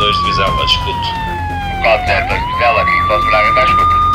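Fire engine siren wailing: a steady high tone that slides slowly down over about two seconds, then swoops quickly back up and holds.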